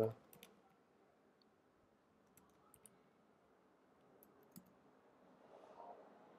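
Faint computer keyboard keystrokes: about half a dozen separate clicks spread over a few seconds, with near silence between them.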